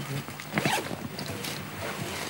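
Zipper on a fabric equipment bag being pulled open, a rasping run of fine clicks.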